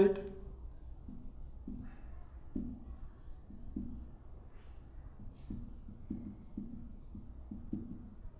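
Marker pen writing on a whiteboard: a run of short, uneven strokes as letters are written, with one brief high squeak about five seconds in.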